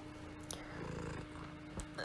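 Quiet low rumble with a faint steady hum, the background noise of a voice recording, with a couple of faint clicks.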